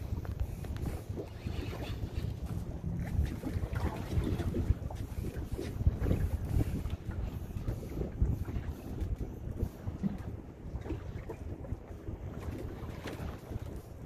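Wind buffeting the microphone in uneven gusts, a low rumbling noise, with a few faint knocks.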